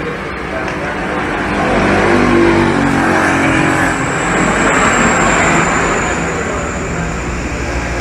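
A motor vehicle engine running close by, loudest a few seconds in and easing off toward the end.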